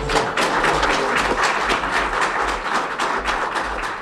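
Courtroom crowd applauding, a dense steady patter of many hands clapping, greeting the court's ruling.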